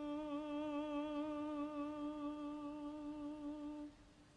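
A single voice humming one long, steady note with a slight vibrato. It stops just before the end.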